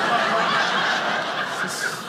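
Studio audience laughing together in a large room, the laughter tapering off near the end.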